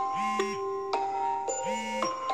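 Smartphone alarm ringing: a short chiming melody of mallet-like notes, the same phrase repeating about once a second.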